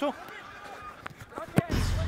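A football kicked hard once, a single sharp thud about one and a half seconds in, after a short shout. Just after it a deep, booming broadcast sound effect starts.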